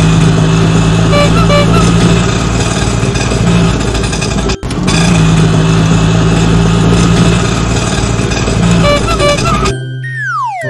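Auto-rickshaw engine sound effect, a loud steady running with a low hum. It cuts out briefly about halfway through and starts again. A few short high chirps come about a second in and again near the end.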